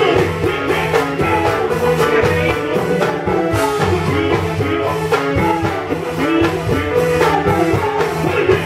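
Loud dance music from a band through a PA, with a steady, busy percussion beat under sustained instruments.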